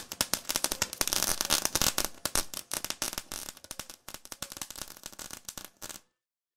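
Dense, irregular crackling like showering sparks, a sound effect that thins out and fades over the last couple of seconds.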